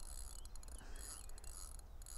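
Fixed-spool fishing reel ticking in a quick, uneven run as its mechanism turns while a hooked carp is played on the rod.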